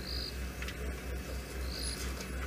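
A night insect chirping, a short high chirp repeating about every second and a half, over a low pulsing rumble.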